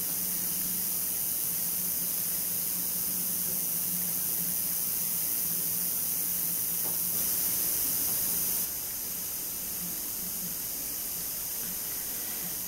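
Steady background hiss with a faint low hum, dropping slightly in level about nine seconds in; the handling of the bamboo needles and yarn is too soft to stand out.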